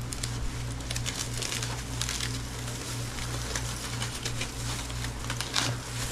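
Aluminium foil crinkling and crackling as foil-wrapped food packets are pulled open by gloved hands, in many short irregular crackles. A steady low hum runs underneath.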